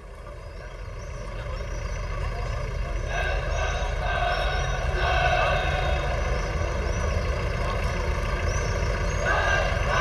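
Outdoor street ambience fading in: a steady low traffic rumble with patches of indistinct voices or passing-vehicle noise coming and going.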